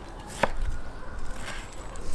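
Chef's knife cutting raw wild boar meat into chunks, the blade knocking on a wooden cutting board: one sharp knock about half a second in and a fainter one near the end.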